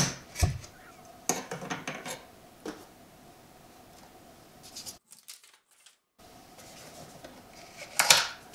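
A utility knife blade slicing through the seal on a thin cardboard box: a handful of short scraping cuts in the first three seconds. After that, only faint handling of the cardboard, with a louder rustle as a flap is pulled open at the end.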